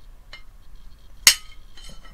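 Kitchen knife cutting through a soft block of blue cheese and striking the ceramic plate beneath. There is a faint clink about a third of a second in, a loud ringing clink a little past the middle, and a lighter clink near the end.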